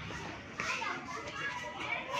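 Faint, distant children's voices and chatter, with no one speaking close by.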